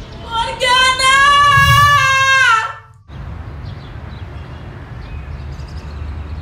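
A female voice holds one long high note for about two and a half seconds, rising slightly and then sliding down before it cuts off abruptly. It is followed by a steady, low outdoor background hum.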